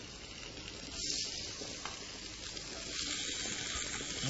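Olive-oiled haddock steaks sizzling on a smoking-hot dry grill pan: a steady hiss that swells about a second in and again about three seconds in.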